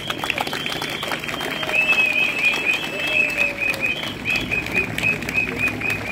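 Crowd applauding: many hands clapping. Through the second half a high, warbling tone pulses several times a second above the clapping.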